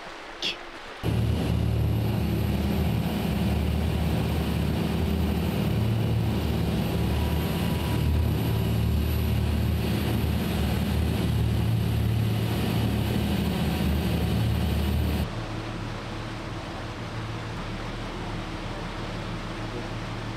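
Steady low drone of a boat's engine heard on board, starting about a second in and dropping abruptly to a quieter background hum about three-quarters of the way through.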